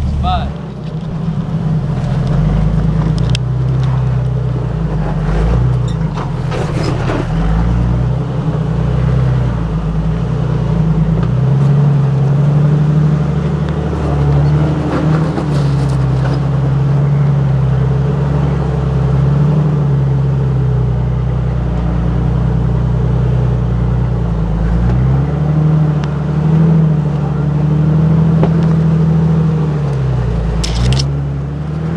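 Lifted Jeep Wrangler's engine running at low revs while rock crawling, its pitch rising and falling with the throttle. A few short knocks along the way.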